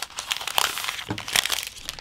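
Clear plastic protective film being peeled off a smartphone's back and crinkling in the hands, a dense run of irregular crackles.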